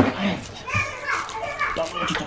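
Indistinct child's voice and chatter, quieter than the adult speech just before, with no clear words.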